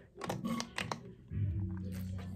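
A handful of quick clicks and knocks, like something being handled or tapped, followed a little past halfway by a steady low-pitched tone that carries on: background music coming in.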